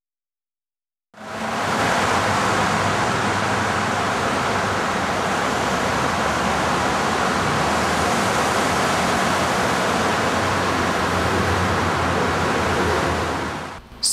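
Loud, steady rushing noise like static hiss, cutting in suddenly about a second in after dead silence and holding even throughout.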